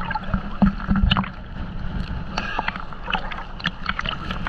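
Sea water sloshing and splashing around a GoPro held at the surface, the waves lapping against the camera housing, with many small irregular ticks and pops of water and bubbles over a muffled low rumble.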